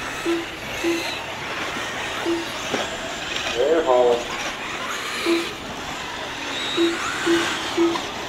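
1/8-scale electric RC truggies racing on a clay track: a steady hiss of motor whine and tyres with a few rising whines as cars accelerate. Short low beeps sound seven times at irregular intervals, typical of the lap-timing system as cars cross the line, and a brief voice cuts in about four seconds in.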